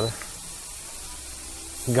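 Steak sizzling on the plate of a Power Smokeless Grill, a steady hiss, with the grill's smoke-extraction fan running as a faint low hum.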